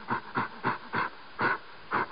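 Location sound of a bison walking along a gravel roadside: a run of short, soft sounds, about three or four a second, over a faint steady hiss.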